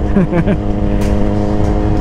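Suzuki GSX-R sportbike engine running at a steady, even pitch while cruising, with wind noise rumbling over the microphone.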